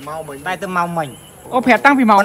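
A man talking, with a short pause about a second in before he goes on.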